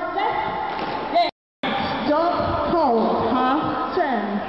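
A woman's voice amplified through a microphone in a large hall, broken by a sudden, complete dropout of about a third of a second a little over a second in.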